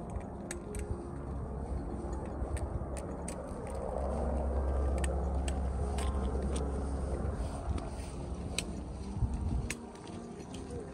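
Wind buffeting the microphone outdoors, a low rumble that swells in the middle and eases off, with scattered sharp light clicks over it.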